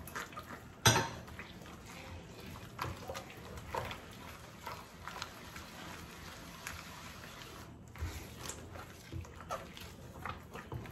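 A gloved hand mixing a soft, oily, cream-like batter in a large ceramic dish: quiet wet squelching with scattered light knocks of the hand against the dish. The loudest is a sharp knock about a second in.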